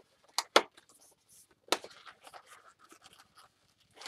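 Long latex modelling balloon rubbing and squeaking as it is twisted by hand: a few sharp squeaks in the first two seconds, with faint rubbing between.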